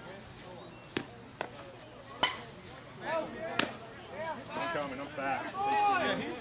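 Three sharp cracks of a softball striking something hard, spaced about a second apart, with a fainter tap between the first two. A voice talks over the second half.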